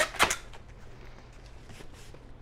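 Packing tape ripping off a handheld tape-gun dispenser onto a cardboard box: two short, loud rips right at the start, then faint handling and rustling of the taped box.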